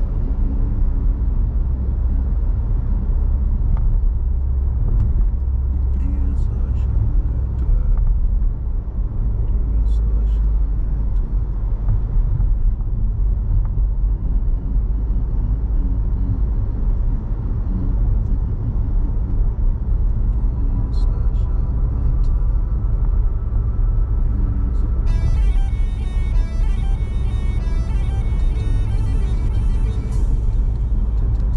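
Steady low rumble of a car's road and engine noise heard inside the cabin while driving. About five seconds before the end, a bright sound with an even, repeating pattern comes in over the rumble.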